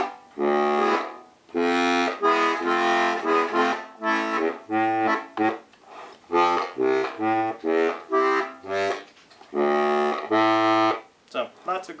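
Strasser Steirische three-row diatonic accordion with three middle reeds played in short detached chords, the bellows pushed and pulled. The chords alternate with deep, tuba-like notes from its Helikon bass. The playing stops near the end.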